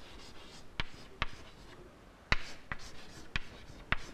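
Chalk writing on a chalkboard: about six sharp, irregular taps as the chalk strikes the board, with faint scratching between them.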